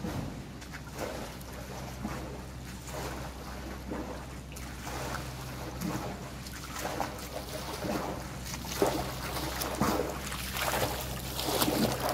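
Pool water splashing and lapping as a swimmer swims front crawl toward the microphone, the stroke splashes getting louder and closer near the end, over a steady low hum.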